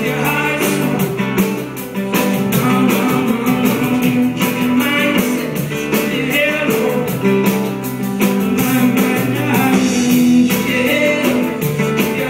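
A live band playing folk-rock: strummed guitar, bass guitar and drum kit, with the drums keeping a steady beat under sustained guitar notes, heard from among the audience.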